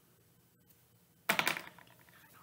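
A brief flurry of light taps and rustles about a second and a half in, from hands handling a small skincare item and touching the face.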